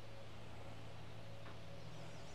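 Quiet outdoor ambience: a steady low hum under a faint even hiss.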